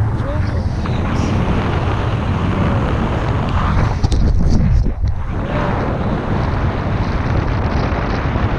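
Loud, steady wind buffeting the camera's microphone in flight under a tandem paraglider, with a short dip in the noise about five seconds in.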